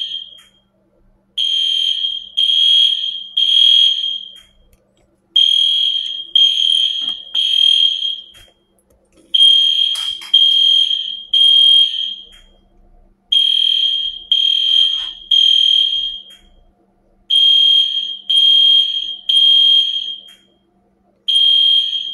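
Smoke alarm beeping in the temporal-three pattern, the standard fire-evacuation signal: groups of three high beeps repeating about every four seconds, with a pause of about a second between groups.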